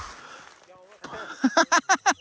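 An even hiss of a snowboard sliding over snow. About one and a half seconds in, a man breaks into rapid, staccato laughter.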